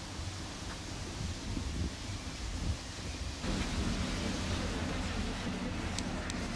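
Wind rumbling on the camera microphone, a steady low noise. About three and a half seconds in it steps up louder, with a faint low hum beneath it.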